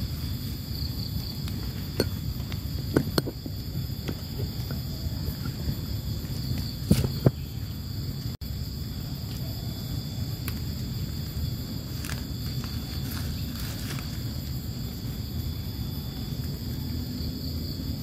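Insects trilling steadily in a high, unbroken chorus over a low rush that fits the nearby river. A few short, sharp clicks and rustles from hands working through wet leaf litter, the loudest pair about seven seconds in.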